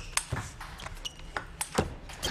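Table tennis ball being struck by rackets and bouncing on the table in a fast rally: a quick series of sharp clicks, several to the second.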